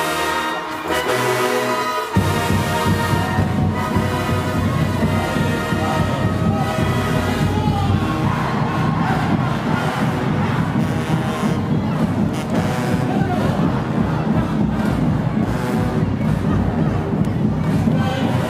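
Marching band brass playing in harmony. About two seconds in, the sound cuts abruptly to loud, bass-heavy band music, with a crowd cheering under it.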